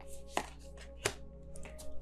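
Tarot cards being shuffled and drawn from the deck: two sharp card snaps about half a second and a second in, then a few softer ticks near the end, over soft background music with steady held tones.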